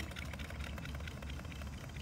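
Steady low hum of room tone, with no distinct event.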